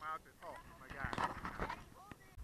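Indistinct voices talking, with no words that can be made out.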